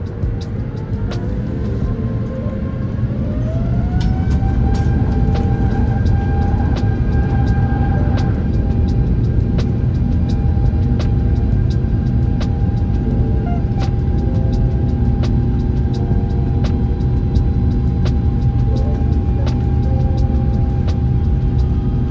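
Airbus A350-900's Rolls-Royce Trent XWB engines spooling up to takeoff thrust, heard from inside the cabin: a whine rises in pitch over the first few seconds. It then settles into a loud, steady engine sound and a low rumble through the takeoff roll.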